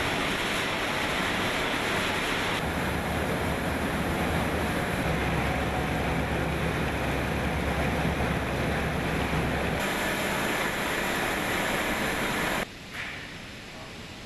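Steady running noise of factory machinery with a low hum underneath. It changes abruptly several times, as from one machine to another.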